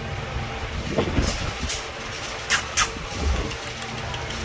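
Steady low rumble of street traffic and background noise, with a thump about a second in and two short sharp clicks about half way through.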